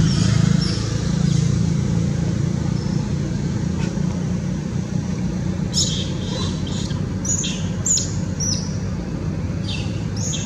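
Steady low rumble, like distant traffic, with short high chirps coming in quick clusters from about six seconds in.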